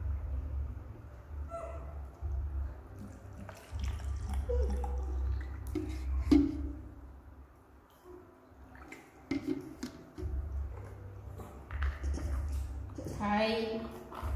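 Scattered light clicks and knocks of small plastic milk cups and a feeding bottle being handled, over an on-off low rumble. There are a few brief voice-like sounds, and a short voiced sound with many overtones near the end.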